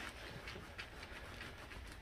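Faint scraping and crunching of a small kitchen knife cutting into the tough, knobbly rind of a ripe jackfruit.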